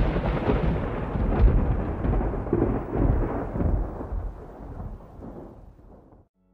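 Thunder rumbling after a loud clap, with a few renewed swells, then dying away near the end.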